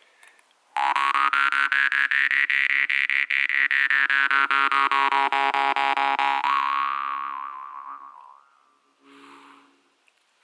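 A Szilágyi Black Fire jaw harp in C, plucked rapidly over a steady drone, with the overtone melody rising high and then sinking back. It rings on and fades away near the end.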